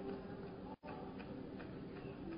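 Faint, soft ticking over a quiet steady background tone, with a momentary gap to silence just under a second in.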